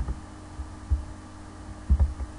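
A few dull, low thumps about a second apart over a steady low hum: a computer mouse being clicked and handled close to the microphone.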